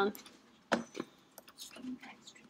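Two sharp clicks about a third of a second apart, from a computer mouse button, followed by a few fainter ticks.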